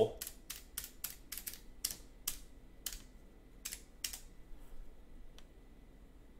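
Typing on a computer keyboard: about a dozen quick, irregularly spaced keystrokes over the first four seconds, thinning to one or two after that.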